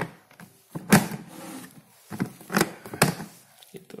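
Hard plastic knocks and clatter from a homemade oil-draining spinner's container and lid being handled, about five sharp knocks, the loudest about a second in.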